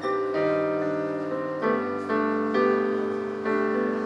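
Piano-voiced intro chords played on a Yamaha Montage 7 keyboard synthesizer. A new chord is struck about six times, each ringing on until the next.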